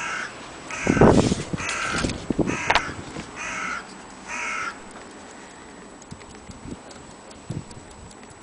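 A bird gives about six harsh caws, roughly one a second, in the first five seconds. A loud, dull knock comes about a second in.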